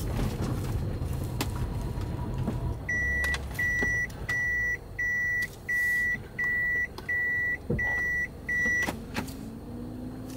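Toyota Hiace cabin warning buzzer beeping nine times at one steady pitch, about 0.7 s apart, starting about three seconds in and stopping near the end: the reverse-gear warning, sounding while the gear lever is in reverse. The van's engine runs low underneath.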